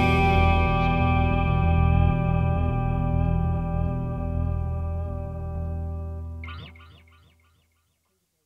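The final chord of a rock song on guitar through effects, with a low bass note underneath, ringing out and slowly fading. Near the end a short wavering high note comes in, then the sound drops away to silence.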